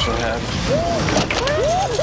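Voices with exaggerated sweeping rises and falls in pitch, over a steady background rush.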